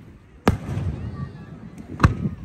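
Aerial fireworks shells bursting: one sharp bang about half a second in, followed by a low rumbling echo, then another bang right at the end.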